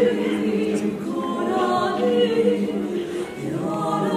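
Small mixed ensemble of men's and women's voices singing unaccompanied in held chords. The phrase breaks off briefly about three and a half seconds in, then a new one begins.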